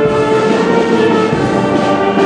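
Brass band playing long held chords.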